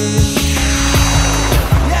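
Sound-system mix effect: a fast mechanical ratcheting sweep that falls in pitch and stops about a second and a half in, over a held bass note.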